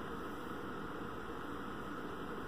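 Steady low hiss of room tone with no distinct events.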